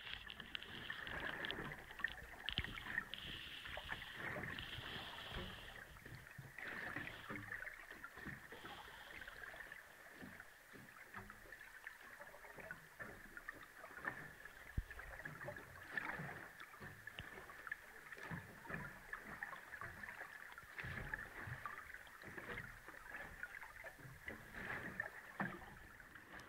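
Faint sea water lapping and splashing, dotted with many small irregular clicks and knocks, over a faint steady high-pitched tone.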